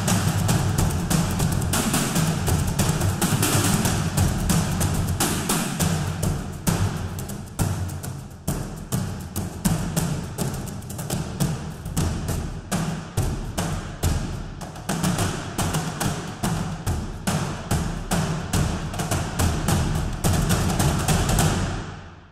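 A sampled ensemble of frame drums played live from a keyboard: a steady, driving run of many hand-drum hits with a deep, booming body, dying away at the end.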